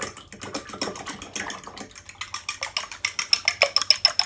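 A fork beating eggs and milk in a ceramic bowl: rapid, even clicks of metal on the bowl that grow louder and steadier about halfway through, with a light ring from the bowl.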